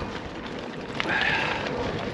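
Wind buffeting the microphone and gravel-bike tyres rolling over a loose gravel climb. About a second in, a short, louder hissing burst stands out, most likely the rider's hard breath out on a tough climb.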